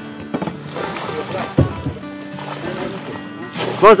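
Background music with held notes, over a noisy hiss, with one sharp knock about one and a half seconds in. A man shouts "go" near the end.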